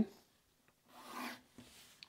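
Pencil drawing a single straight line on paper along a ruler: one stroke of graphite rubbing on paper, about a second in and lasting about half a second.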